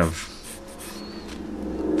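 Pencil drawing on sketchbook paper: soft, faint scratching of pencil strokes.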